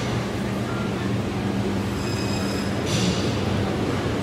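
Steady low mechanical hum of a large store's background noise, with a short hiss about three seconds in.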